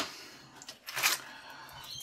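Faint rustling with a brief crackle about a second in: a plastic-and-foil blister pack of tablets being handled and pulled out of a fabric pouch pocket.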